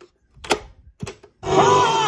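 A few sharp mechanical clicks as a cassette is pushed into a Panasonic RX-5090 boombox's tape deck and the deck is operated. About one and a half seconds in, a song with singing starts playing from the tape through the boombox's speakers.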